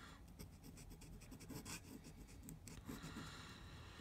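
Fine, stiff Nikko "Japanese character" steel dip-pen nib in a bamboo holder scratching faintly across paper as a word is written, a string of short pen strokes. The nib has a slightly scratchy feel on the paper.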